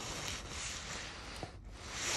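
Rubbing and scraping handling noise as a digital caliper is moved and set against a fan clutch's nut, with a couple of faint light clicks near the end.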